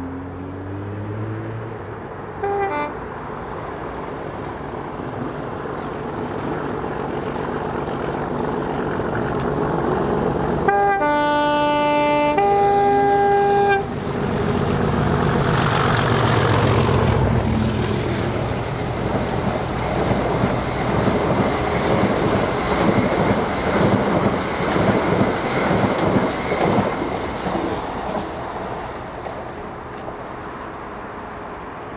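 Class 37 diesel locomotive 37608 approaching with its English Electric engine running, giving a short toot about two and a half seconds in, then a two-tone horn blast of about three seconds, a lower note followed by a higher one. The locomotive then passes close, followed by the rhythmic clatter of the wheels of the hauled coaches over the rail joints, fading near the end.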